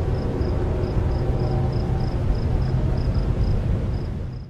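A loud, steady rumbling noise with a faint high pip repeating about four times a second.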